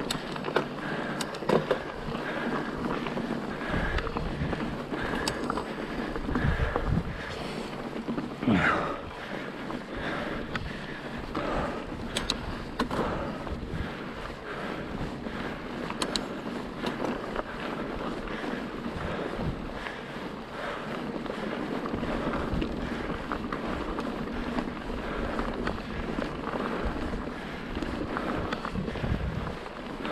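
Pivot Trail 429 mountain bike ridden over rocky dirt singletrack: tyres crunching on dirt and stones and the bike rattling and clicking over bumps, with wind on the microphone. A brief squeak rises and falls about eight seconds in.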